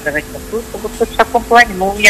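A voice heard over a telephone line, coming in short, broken snatches over steady hiss and a low hum.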